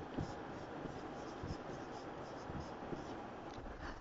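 Marker pen writing on a whiteboard: faint scratching in short strokes as a line of handwriting is put down.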